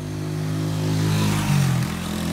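Small motorcycle engine running close by, growing louder, with a shift in pitch about one and a half seconds in.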